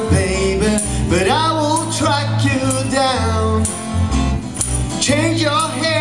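Live band music: electric and acoustic guitars over a steady bass line with a regular light percussion beat, and a male voice singing a line that glides up and down in pitch.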